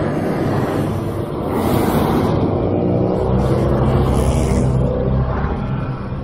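Motorcycle engine running on the move, mixed with wind and road noise; the engine note rises in pitch from about halfway through as it speeds up.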